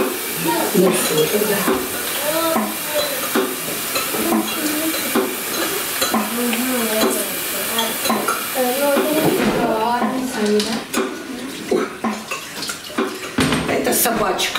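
Steel cooking pots, lids and a ladle clinking and knocking at the stove as food is dished out, with scattered sharp clinks that come thicker near the end.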